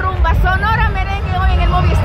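A person's voice speaking over a loud, steady low rumble.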